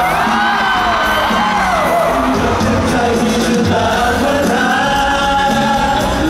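Live pop song played through a concert hall's sound system: several singers sing a melody with held, gliding notes over band accompaniment.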